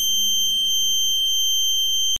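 A steady, high-pitched ringing tone: the ear-ringing sound effect that follows a flashbang going off. A faint low hum runs under it.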